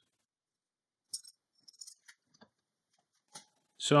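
Near silence broken by a few faint, short, light clicks: one a little after a second in, a small cluster around two seconds, and one more near the end.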